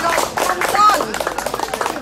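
A few people clapping their hands in irregular claps, mixed with lively talking.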